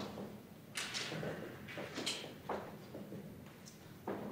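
Several sharp knocks and clicks over faint rustling: people changing seats and handling things at a podium table.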